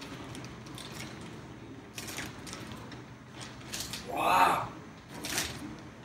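Clear plastic bag rustling and crinkling as it is pulled off an electric unicycle, in several short bursts, the loudest about four seconds in.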